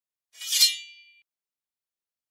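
A single short, high-pitched ringing sound effect that swells quickly and fades out within about a second.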